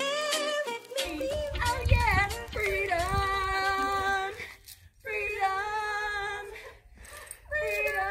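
Women's voices singing long held notes in three phrases, with short breaks between them, over a low wind rumble on the microphone. A brief bit of music plays at the start.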